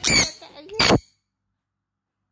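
Two short, high-pitched vocal cries about a second apart, then the sound cuts off.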